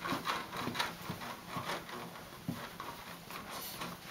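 A baby bouncing in a Jolly Jumper doorway bouncer: a run of soft, irregular taps and knocks, a few a second, from the feet striking the floor and the bouncer moving.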